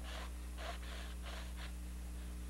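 A stick of charcoal sketching on a toned canvas: several short, soft scratching strokes in quick succession, then one more near the end, faint over a steady low hum.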